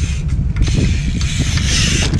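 BMX bike rolling along a concrete ledge, its tyre hiss growing louder toward the end, over steady wind rumble on the microphone.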